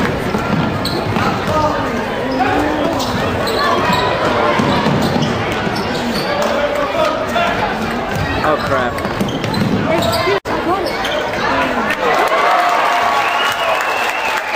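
Basketball bouncing on a gym's hardwood floor during play, with spectators' voices and shouts around it in the hall. The sound cuts out for an instant about ten seconds in.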